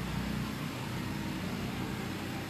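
Steady low hum with a faint even hiss of background room noise.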